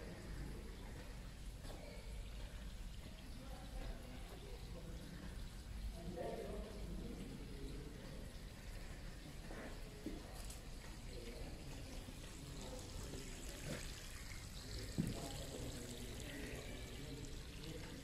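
Faint steady trickle of running water, with low, distant voices now and then and a sharp knock about fifteen seconds in.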